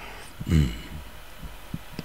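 A man's short, low 'mm' of assent about half a second in; otherwise only quiet room noise.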